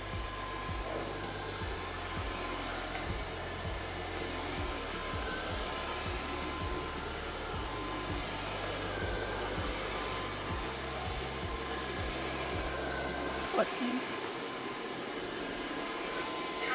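Xiaomi TruClean W10 Ultra wet-dry floor vacuum running steadily in its water-absorbing mode, sucking a water spill off tiles: a steady rush of air with a faint high whine. Its low hum drops away a couple of seconds before the end.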